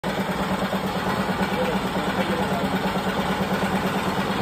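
Motor-driven grain processing machine (a 'mush cutter') running steadily, with a constant hum.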